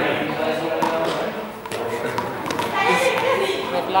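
Indistinct chatter of several people in a gym hall, with a few light taps.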